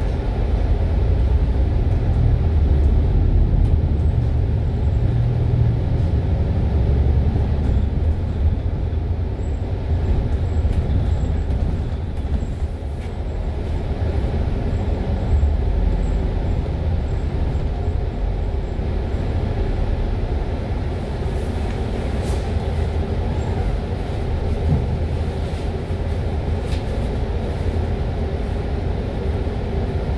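MAN A95 Euro 5 double-decker bus driving along, heard from inside the cabin: a steady low engine and road rumble, a little louder in the first several seconds.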